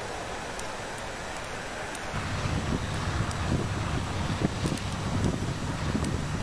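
Tracked armoured vehicles driving: a low rumble of engines and tracks, mixed with wind noise on the microphone. The rumble comes in louder about two seconds in.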